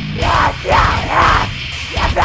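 Harsh screamed metal vocals: three loud, drawn-out screams in the first second and a half. They are sung over a heavy metal backing track with a thick, rhythmic low end.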